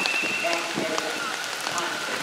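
Steady rain falling, with many sharp ticks of drops striking close by.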